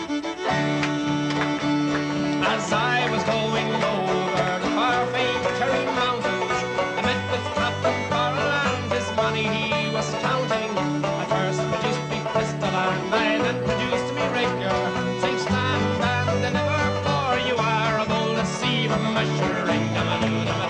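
Irish folk band playing a lively tune together on banjos, acoustic guitar and fiddle, with a steady strummed rhythm and a man singing. The full band comes in sharply right at the start.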